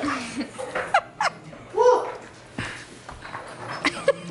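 People laughing in several short bursts, the loudest about two seconds in, at a dog chasing a laser-pointer dot.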